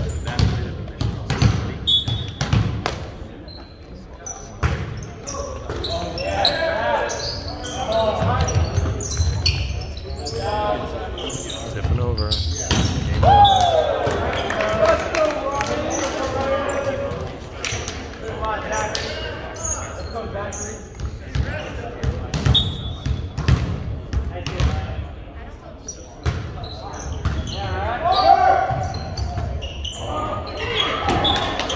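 Volleyballs smacking on hands and bouncing on a hardwood gym floor, many sharp knocks at irregular intervals, echoing in the big hall, with voices of players and spectators calling and talking.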